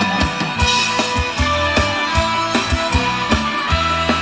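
Live band playing Thai ramwong dance music, driven by a drum kit keeping a steady fast beat under sustained instrumental notes.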